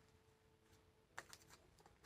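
Near silence, with a few faint, short clicks in the second half from a deck of tarot cards being shuffled by hand.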